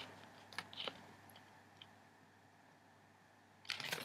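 A few faint clicks and taps in the first second from fingers handling a small paper booklet, then near quiet, with handling rustle coming in just before the end.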